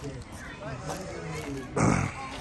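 Voices talking in the background, then a brief loud burst near the end.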